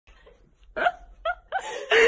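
A woman laughing in short, high-pitched bursts: three quick gasping laughs, then a longer run of laughter near the end.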